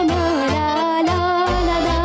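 Romanian folk song sung live by a girl, with held, ornamented notes over a backing track with a bass beat about twice a second.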